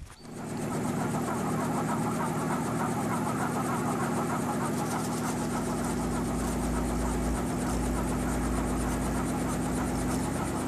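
Robinson R44 helicopter running on the ground: a steady engine and rotor hum, with a deep low rumble joining it about halfway through.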